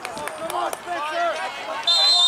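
Players and spectators shouting across a soccer field, with a couple of sharp knocks about halfway through. Near the end a referee's whistle blast starts, one steady high tone and the loudest sound.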